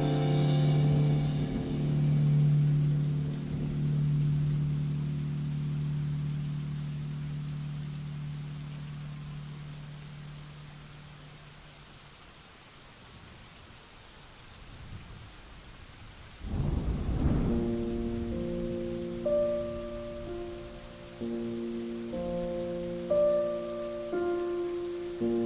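Steady rain falling, with a short rumble of thunder about two-thirds of the way through. Soft instrumental music plays over it: a held chord fades away over the first half, and a new melody of single notes begins with the thunder.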